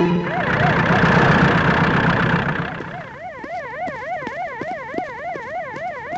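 Police siren warbling rapidly up and down, about three cycles a second. For the first two and a half seconds it sits under a loud rushing noise that then dies away.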